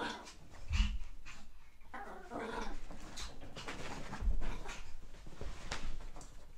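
Pet dogs playing with each other, making irregular growly vocal sounds, with a couple of dull thumps.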